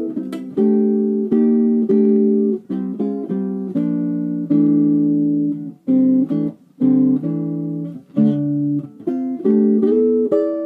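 Archtop guitar playing jazz comping chords: a series of voicings struck one after another, each held about half a second to a second, with a few short breaks between phrases.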